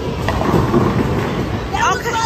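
Low rumble of bowling balls rolling down wooden lanes, with a voice coming in near the end.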